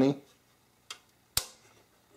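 Two clicks as a metal-cased switching power supply is handled: a faint one about a second in and a sharper, louder one just after.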